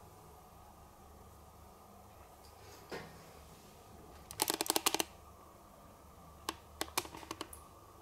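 A quick run of small, sharp clicks and taps about four seconds in, then a few scattered single clicks, over a low steady hum.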